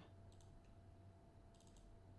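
Near silence with a few faint computer mouse clicks, about half a second in and again near the end, over a faint steady hum.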